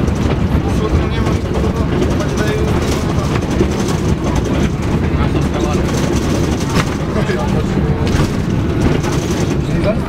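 Interior of a moving city bus: steady, loud engine and road rumble, with indistinct voices mixed in.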